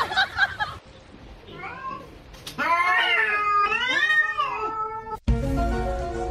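Cat meowing: a run of several drawn-out meows, each rising and falling in pitch, from about halfway through until they cut off abruptly near the end.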